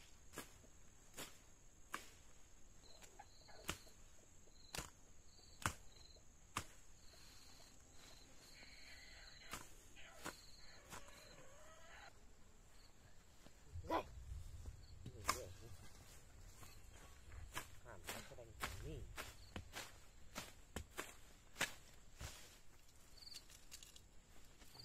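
Faint, sharp chops of a long-bladed knife hacking through weeds, about one stroke a second. Further tool strikes in the soil follow in the second half.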